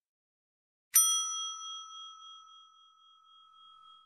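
Notification-bell ding sound effect from a subscribe animation: one sharp bell strike about a second in, ringing on and fading away over about three seconds.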